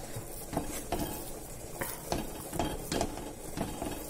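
A wooden spatula stirring and scraping a thick mashed sweet-potato and coconut mixture around a metal pan, in a run of quick strokes about two or three a second.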